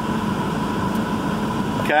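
A steady mechanical hum with a faint whine in it, which cuts off near the end.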